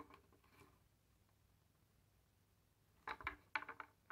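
Near silence, with a few faint, short clicks and rattles in the last second as the parts of a disassembled power-folding mirror mechanism are turned by hand.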